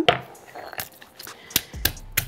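Granite pestle knocking in a granite mortar: a handful of sharp knocks, closer together near the end, as garlic cloves are given a light crush to loosen their skins.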